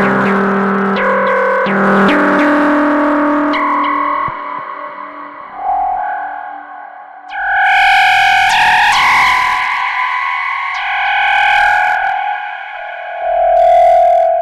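Charlatan virtual-analog software synthesizer playing a melodic sequence: short plucky notes over a low line for the first few seconds, then sparser, longer held higher notes, turning brighter about seven seconds in. The sound runs through tape echo and reverb.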